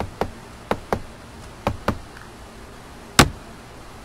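About seven sharp taps or knocks, mostly in quick pairs, the loudest one about three seconds in.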